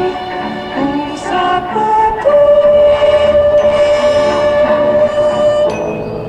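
Live rock band with an orchestra playing. Pitched notes shift for the first couple of seconds, then a long note is held until near the end.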